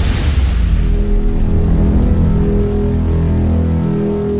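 Cinematic logo-sting music: a noisy whoosh swelling up at the start, then a deep, steady drone of held low tones.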